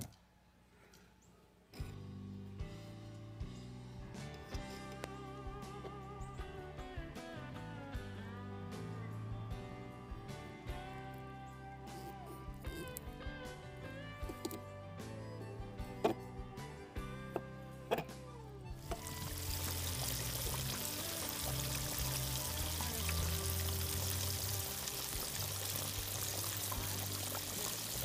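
Background music starts a couple of seconds in. About two-thirds of the way through, fish fillets deep-frying in a pot of hot oil add a steady sizzling hiss under the music.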